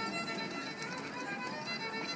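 Solo fiddle playing a folk dance tune, held notes running on steadily.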